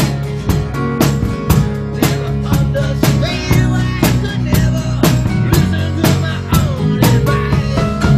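Rock band playing live: strummed acoustic guitar, electric guitar and a drum kit keeping a steady beat, with a male voice singing the melody.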